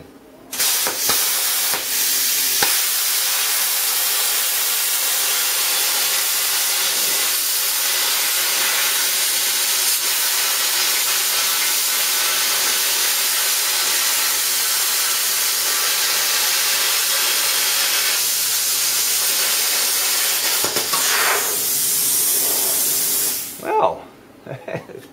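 Small plasma cutter with a PT31 torch cutting through metal sheet: a loud steady hiss of the arc and air jet that starts about half a second in and cuts off suddenly just before the end.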